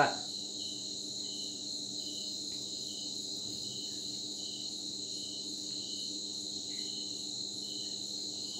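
Insects, crickets by their sound, chirping and trilling steadily, with a faint chirp pulsing about one and a half times a second.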